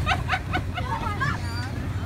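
Children shouting and chattering, with high-pitched yells, over a steady low hum.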